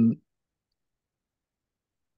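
The end of a drawn-out spoken 'um', cut off about a fifth of a second in, then near silence.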